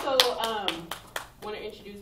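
Applause from a small audience dying away into a few scattered hand claps in the first second and a half, with a woman's voice over it.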